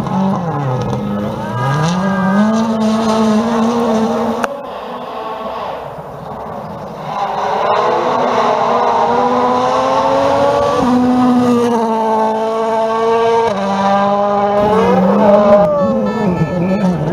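Turbocharged four-cylinder World Rally Car engines driven at full throttle on a gravel stage, the pitch climbing and dropping sharply with each gear change and lift. A quieter stretch around five to seven seconds in, then another car comes through loud.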